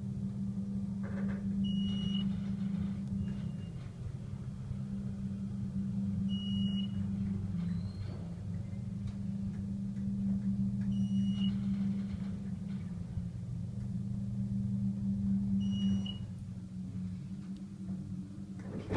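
Otis Series 1 hydraulic elevator's pump motor running with a steady low hum as the car travels up, swelling and easing every few seconds and fading in the last couple of seconds as the car nears the floor. The hum has an unusual pitch for an Otis. Short high beeps sound about every four to five seconds.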